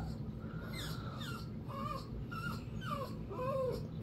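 Small fluffy white dog whimpering in a string of short, high whines, two or three a second, unhappy at being held between her owner's legs.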